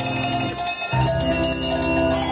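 Handbells rung by a group of amateurs on a leader's cue, playing a tune note by note, the tones ringing on. A new set of notes sounds about a second in.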